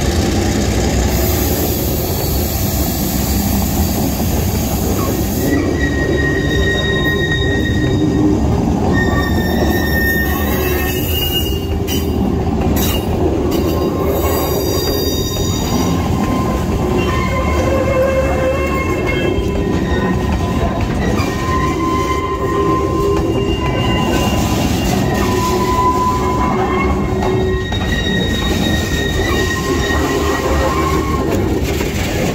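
Loaded freight wagons, boxcars and grain hoppers, rolling past at close range: a steady rumble of steel wheels on the rails, with high wheel squeals coming and going.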